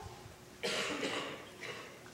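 A single cough a little over half a second in, followed by a weaker puff about a second later, in a hush between sung phrases.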